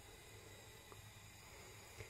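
Near silence: faint kitchen room tone with a low steady hum, and a tiny tick about halfway through.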